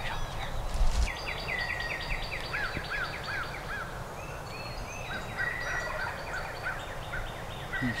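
Turkey yelping: long runs of short repeated notes, about four a second, with a second, lower-pitched run overlapping. A couple of low bumps come near the start.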